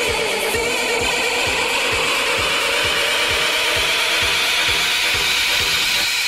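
Tech-house DJ mix: a steady four-on-the-floor kick drum at about two beats a second, under a noisy synth sweep that rises in pitch through the second half.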